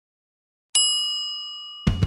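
Dead silence, then a single bell-like ding about three-quarters of a second in. It rings on with a few clear high tones, fading, until music and a voice cut in just before the end.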